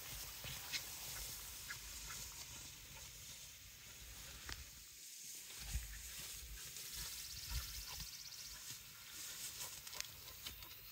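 Wind rumbling on the microphone, with faint rustling and scattered ticks from people walking through tall grass.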